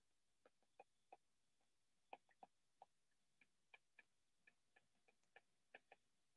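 Near silence with faint, light, irregular ticks: the tip of a stylus tapping on a tablet screen while handwriting.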